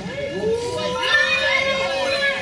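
Children shouting excitedly, with one voice holding a long, high call that swoops up at its start.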